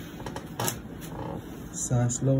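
A few short clicks and rustles as a chiropractor's hands press on the patient's back, the sharpest click about two-thirds of a second in. A voice starts near the end.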